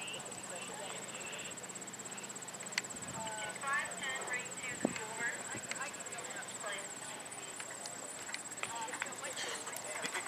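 Horse's hoofbeats on a sand dressage arena as it works through its test, with a few sharper knocks, under a steady high whine. Voices talk in the background from about three seconds in.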